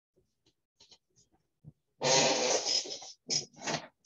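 A person's non-speech vocal noise close to the microphone: one loud, rough burst about halfway through, about a second long, then two shorter ones. A few faint clicks come before it.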